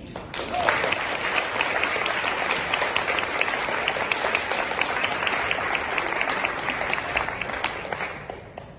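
Audience and people on stage applauding, the clapping breaking out about half a second in and carrying on thickly before fading near the end.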